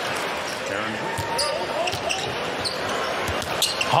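Basketball arena crowd noise with a ball dribbling on the hardwood court and faint voices in the crowd.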